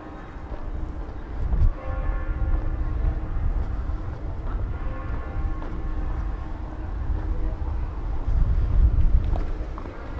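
City ambience with a low rumble that swells about a second and a half in and again near the end, and passers-by talking faintly.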